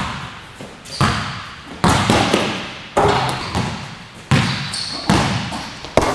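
Basketball bouncing on a hardwood gym floor: about six loud, separate bounces roughly a second apart, each echoing in the hall.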